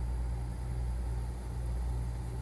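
1980s central air conditioner running: a steady deep compressor hum with the hiss of R-22 refrigerant flowing through the coil, heard under the ceiling vent.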